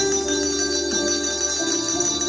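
Children ringing coloured desk bells (press-top bells) along with a backing music track. A sharp bell strike comes right at the start, and the bells ring on with long high tones over the sustained melody notes.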